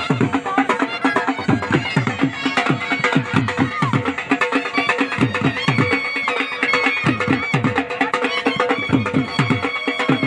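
A live Punjabi-style folk band of dhol drums and bagpipes playing: quick, booming dhol strokes over a steady pipe drone and a wavering, ornamented pipe melody.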